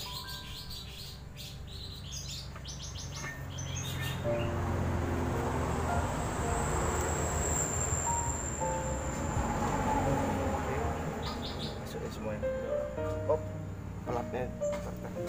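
Small birds chirping in quick runs of short high notes during the first few seconds and again near the end, over steady background music.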